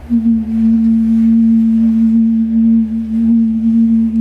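A single long held musical note, steady with a slight waver, with a faint higher overtone above it.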